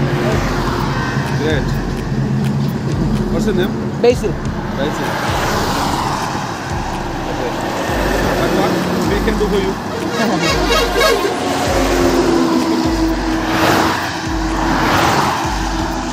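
Highway traffic passing close by, with the rush of tyres and engines swelling and fading as vehicles go past, twice most clearly. People talk and laugh over it.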